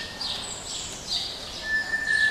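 Birds calling: high chirps that slide downward, one about half a second in, and a steady high piping tone that returns near the end.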